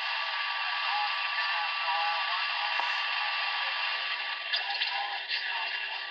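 CB base station receiver hissing with static, the sound thin and narrow like a small radio speaker, with a faint, unreadable voice buried in the noise.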